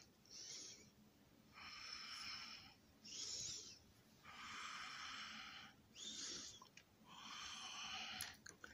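Faint breathing close to the microphone: a regular run of hissy breaths, a short one and a longer one in turn, about seven in all.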